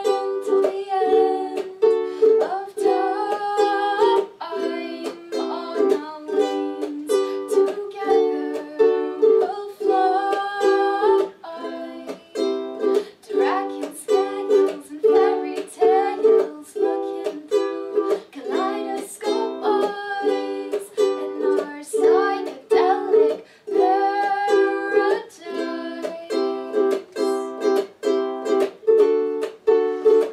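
Ukulele strummed in steady rhythmic chords, with a woman singing over it.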